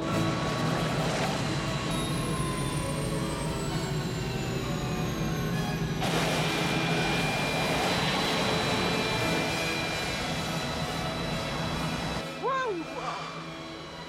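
Three-engine jet airliner landing: its engine whine falls in pitch on the approach, then a louder rush of engine and runway noise starts about six seconds in as it touches down and rolls through the snow. The sound drops off suddenly near the end, with film score underneath.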